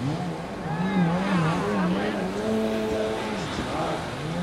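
Jet ski engines running with a wavering pitch that rises and falls repeatedly, with gulls calling above them.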